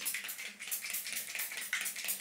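Finger-pump spray bottle of makeup setting spray pumped repeatedly at the face: a quick run of short hissy spritzes. The bottle is nearly empty, so it sputters instead of misting smoothly.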